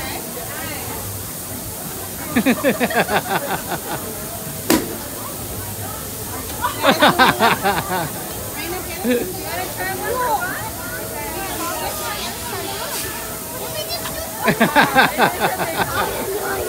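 Bursts of laughter, three times, over a steady background hiss, with one sharp click about five seconds in.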